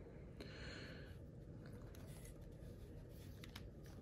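Faint handling of a plastic Transformers figure being transformed: a soft rustle about half a second in, then a few light plastic clicks as its parts are moved.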